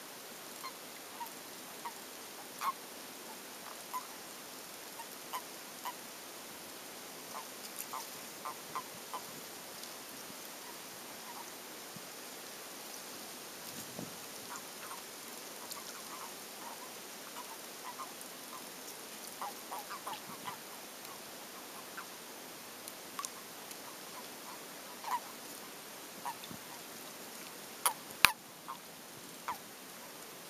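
Common toads (Bufo bufo) calling at a breeding site: many short, soft croaks at irregular intervals over a steady hiss. One sharp click near the end is the loudest sound.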